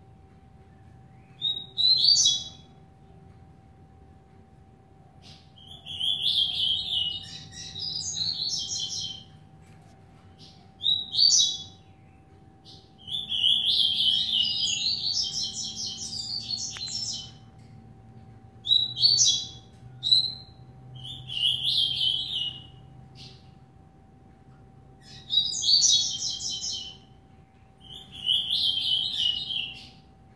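Young male double-collared seedeater (coleiro) singing from its cage: about eight bursts of quick, high song, each one to four seconds long, separated by short pauses.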